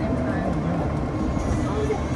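Steady rumbling running noise of a monorail train in motion, with people's voices faintly in the background.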